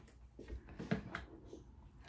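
Quiet room with a few faint, short taps and rustles of handling, about half a second in and around one second in.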